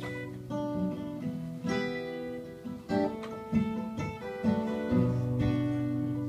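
Solo acoustic guitar playing, chords picked and strummed and left to ring, with a fresh attack every half second to a second.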